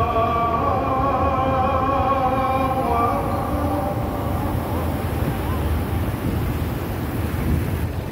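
Muezzin's call to prayer (adhan) over the mosque's loudspeakers: a long held note fades out about three seconds in, and after it a steady low rumble of open-air background noise carries on in the pause between phrases.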